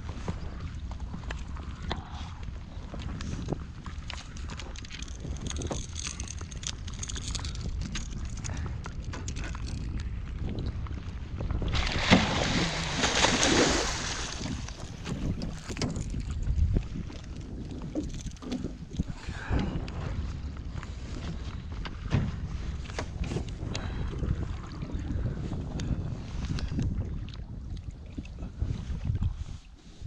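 Wind buffeting the microphone in a steady low rumble, with a louder rush of noise about twelve seconds in that lasts roughly two seconds.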